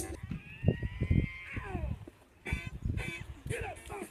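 The song cuts off abruptly and gives way to the phone's own outdoor sound: wind thumping on the microphone, a sliding tone in the first second or so, and indistinct voices in the second half.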